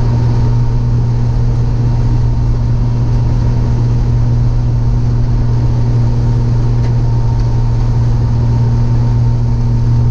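Steady low drone of a 1951 Hudson Hornet's straight-six engine and road noise, heard inside the car's bare cabin while cruising at a constant speed.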